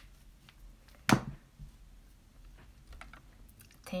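Small makeup items being handled: one sharp tap about a second in, with a few faint clicks around it.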